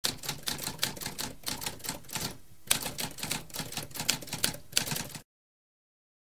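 Typewriter typing: a quick run of key strikes, about five a second, with a short break about two and a half seconds in, stopping suddenly a little after five seconds.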